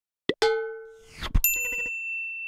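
Animated logo sound effects: a short pop, a bell-like chime that fades over about half a second, a quick rising swish ending in a thump, then a bright high ding that rings on over a fast run of plucked notes.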